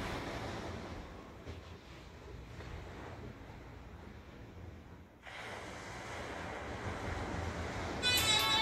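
Wind rumbling on a phone's microphone over a steady outdoor hiss, with no speech. The noise dips briefly about five seconds in, then returns.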